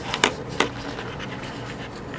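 Hushed room tone of a council chamber kept quiet for a minute of silence: a steady low hum, with three sharp clicks or knocks in the first second.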